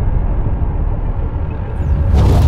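Deep, steady rumble of a cinematic sound effect, slowly easing as the tail of an explosion-like boom.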